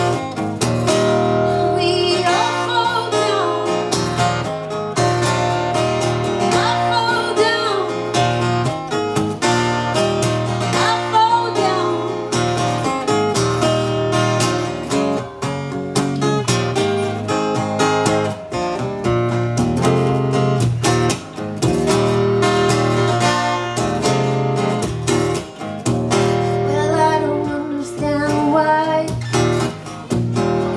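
Acoustic guitar played solo in an instrumental passage of a song, strummed steadily with short melodic runs.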